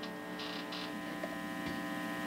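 Boss Katana Mini guitar amplifier idling with the guitar plugged in but not played: a steady, fairly quiet electrical hum and buzz with faint hiss.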